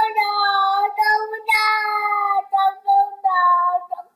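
A young child singing or crooning in a high voice, with long held notes at first and shorter notes from about two and a half seconds in.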